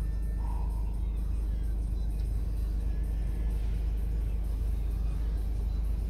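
Mercedes-Benz E220d coupe's four-cylinder diesel engine idling, a low steady rumble heard inside the cabin.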